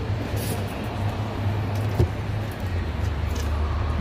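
Steady low outdoor background rumble, with a single sharp click about halfway through.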